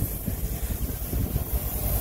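Wind buffeting the microphone: an uneven low rumble with a steady hiss above it.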